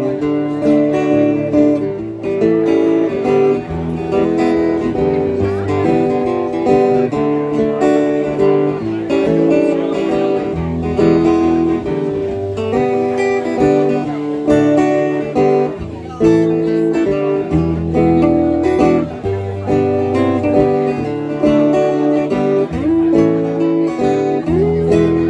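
Two acoustic guitars playing an instrumental break in a country-folk song, with strummed chords and changing notes and no singing.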